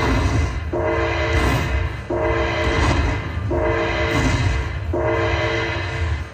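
Slot machine's bonus-win celebration sound: a chord of steady tones held about half a second, repeating about every 1.4 s, alternating with a noisy rush.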